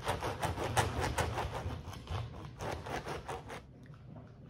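Serrated knives sawing through the tops of raw artichokes on plastic cutting boards: a quick run of short sawing strokes that stops about three and a half seconds in.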